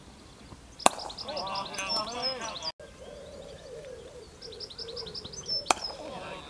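A cricket ball struck by a bat with a sharp crack about a second in, followed by players' voices and a small bird's rapid trilling song; the same again near the end: a bird trill, then another crack of bat on ball.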